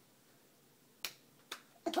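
Two short, sharp slaps about half a second apart, a baby's palm smacking an adult's raised hand in a high five, followed near the end by the start of laughter.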